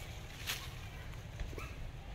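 Outdoor forest ambience with a steady low rumble, a sharp rustle or crackle about half a second in, and a short high chirp a little past the middle.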